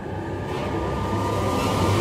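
Whoosh sound effect: a rush of noise that swells steadily louder, with a faint thin tone running through it.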